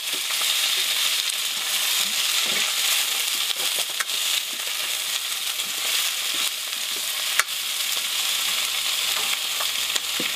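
Vegetables frying and sizzling in a pan over a wood fire, stirred with a spatula: a steady hiss, with two sharp clicks of the spatula against the pan about four and seven seconds in.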